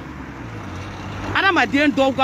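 Low steady hum of a motor vehicle in the background during a pause in talk, then a person starts speaking again about a second and a half in.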